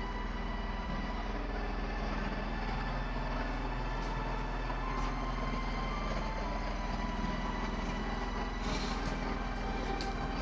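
Steady background hum and hiss with a few faint sustained tones, unchanging throughout.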